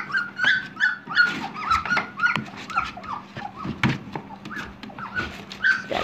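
A litter of 2.5-week-old standard poodle puppies squealing and whimpering. Many short, high-pitched cries overlap, several a second, as the mother dog steps in among them to nurse.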